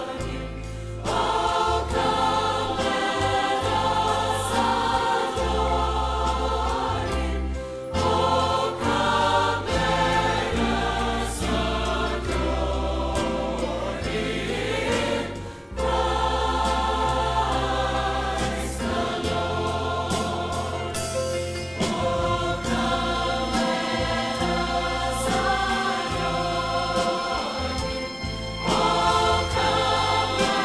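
Large church choir singing a worship medley in long held chords, phrase after phrase, with short breaks between phrases.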